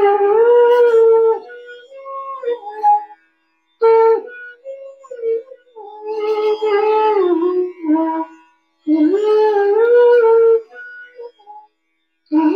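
Bansuri (bamboo transverse flute) playing melodic phrases of Raga Kedar, sliding smoothly between held notes. The phrases come in three main stretches split by brief pauses, the first and the last rising to a long held note.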